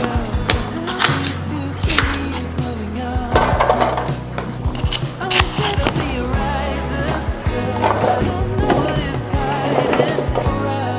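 Background music over a kitchen knife chopping vegetables on a wooden cutting board, the blade knocking on the board at irregular intervals.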